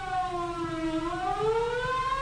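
Civil defense air-raid siren wailing, its pitch falling to a low point about a second in and then rising again: the attack-warning signal to take cover.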